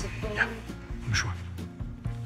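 Soft background music, with two brief faint sounds about half a second and a second in.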